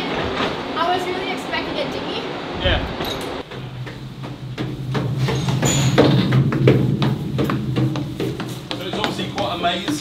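Footsteps and knocks on steel ladder-stairs inside a warship, over a steady low machinery hum that starts about three and a half seconds in. Before that, open-deck noise with indistinct voices.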